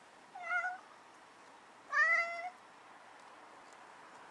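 Domestic cat meowing twice, a short call about half a second in and a longer one about two seconds in, each rising slightly in pitch. The cat is calling at an insect resting on the window screen.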